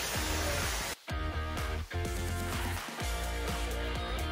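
Background music: repeated pitched notes over a steady low bass. It drops out briefly about a second in, then carries on.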